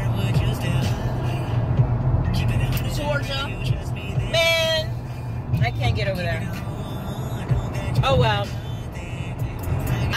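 Steady road and engine rumble inside a car cruising at highway speed, with short snatches of voice or singing over it a few times.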